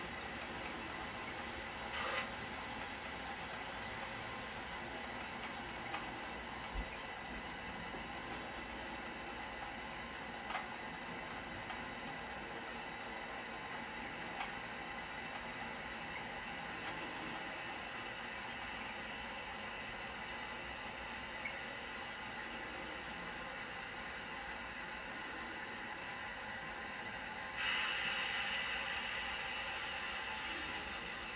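Steady hiss of water running through the supply pipe and Badger water meter as the toilet tank refills, with a few faint clicks. A louder hiss sets in suddenly near the end.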